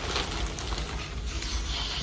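Plastic mailer bag rustling as it is handled and opened and a plastic-wrapped item is pulled out of it.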